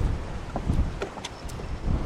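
Wind buffeting the microphone: an uneven low rumble, with a few faint ticks.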